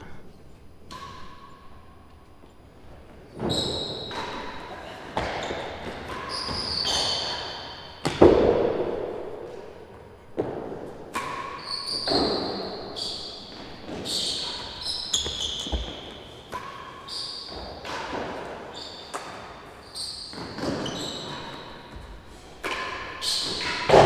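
Real tennis rally in an enclosed court: rackets striking the hard, cloth-covered ball, and the ball knocking off the walls, floor and penthouse roof, each knock echoing round the court. The knocks start about three seconds in and come roughly once a second, with short high squeaks among them.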